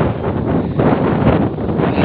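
Wind buffeting the microphone: a loud, continuous rumbling noise that swells and dips.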